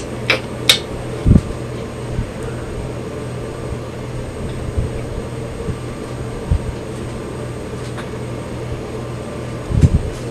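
A steady low mechanical hum like a room fan or air conditioner, with a few light clicks and soft knocks from handling a makeup brush and palette near the start and again near the end.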